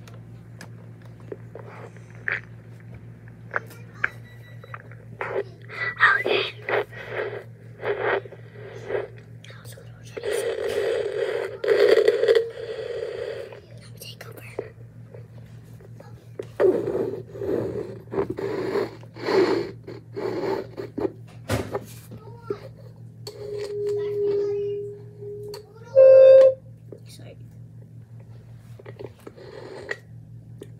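Whispering and mouth sounds made close into a toy karaoke microphone and played through the machine's speaker, over a steady electrical hum, with many small taps and scrapes on the microphone. Near the end a short held tone, then a brief loud note, the loudest sound of all.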